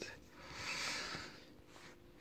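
A soft breath out through the nose, about a second long, swelling and fading, followed by faint handling noise.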